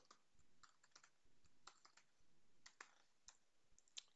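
Faint typing on a computer keyboard: a run of irregular, light keystrokes as a line of code is entered.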